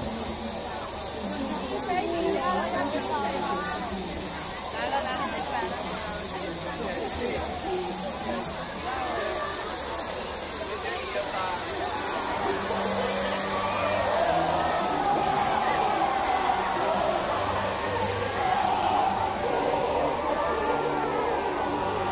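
Steady hiss of a large musical fountain's water jets spraying, under the chatter of many people in the watching crowd.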